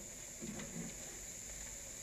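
Quiet pause: faint room tone with a steady, high, thin hiss, and no distinct sound events.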